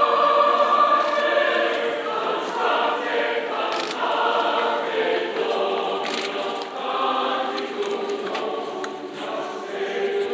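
A choir singing a hymn, with long held notes.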